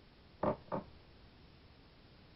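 Two short, muffled throat sounds about a third of a second apart, from a man holding in a lungful of cannabis smoke after his first puff.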